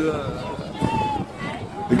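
Speech only: a man's voice trailing off in a drawn-out hesitation, a short voiced sound about a second in, then a brief lull before he starts speaking again near the end.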